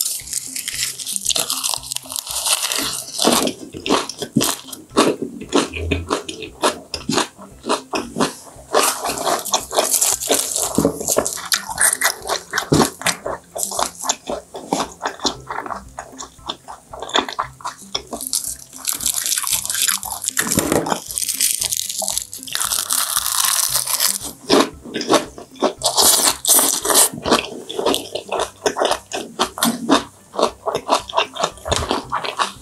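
Close-miked chewing of raw yellowtail sashimi wrapped in fresh lettuce and perilla leaves, then in seaweed: continuous wet crunching and crackling of the leaves, with soft squishy bites of the fish.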